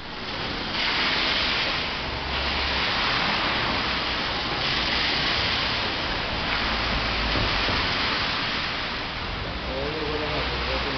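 A loud, steady rushing noise with no distinct tone. Its hissier upper part swells twice, about a second in and again around five seconds.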